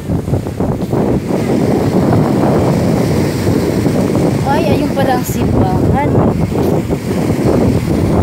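Wind buffeting a phone's microphone: a steady, loud, low rumbling noise. Faint voices come through it a little past the middle.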